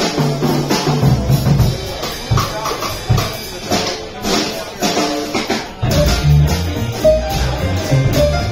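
Live jazz combo playing: upright double bass plucking low notes, a drum kit with cymbals, and an electric guitar.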